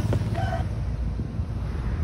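Steady low wind rumble on the microphone from a vehicle moving along a road, with one short bird call about half a second in.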